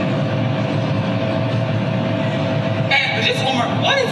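Steady low rumble of a car's cabin on the road, with a faint steady hum under it. A woman starts speaking about three seconds in.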